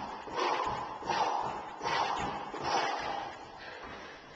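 Sneakers landing and scuffing on a concrete garage floor during jump training: four rhythmic bursts about three-quarters of a second apart.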